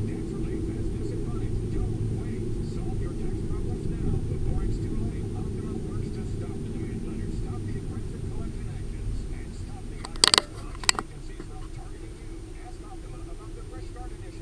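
Car driving slowly, with low engine and tyre rumble heard from inside the cabin. Two sharp knocks come about ten seconds in, half a second apart.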